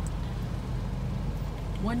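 Hyundai car idling, a steady low hum heard from inside the cabin. A woman's voice starts near the end.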